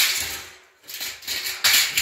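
Steel UD drywall profiles being handled and scraping against each other and the concrete floor. A scrape fades out over the first half second, then after a short pause come shorter scrapes, the loudest near the end.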